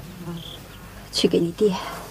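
A brief, faint insect buzz early on, then a voice speaks a word near the end.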